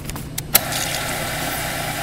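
Soda fountain dispenser clicking on about half a second in, then a steady hiss of soda pouring and fizzing into a plastic cup.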